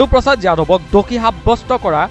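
A voice speaking continuously over background music.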